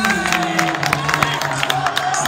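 Irregular hand clapping and applause greeting the end of a parallel bars routine, with music and voices underneath.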